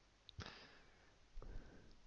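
Near silence: room tone with a faint click shortly after the start and a soft, short noise about a second and a half in.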